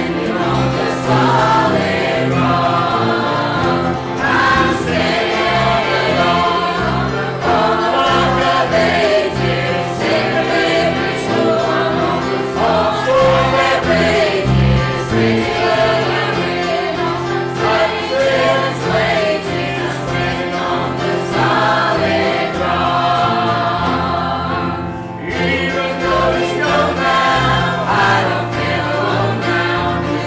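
Church choir singing a gospel hymn together, accompanied by piano, bass guitar and acoustic guitar, with a brief pause between phrases near the end.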